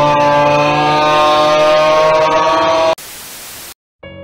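A loud sound effect: a droning held tone that slides up in pitch and then holds steady, cut off about three seconds in by a short burst of static hiss, then a moment of silence.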